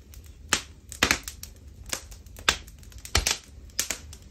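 Wood fire crackling in a fireplace: burning planks give off sharp, irregularly spaced snaps and pops, roughly two a second.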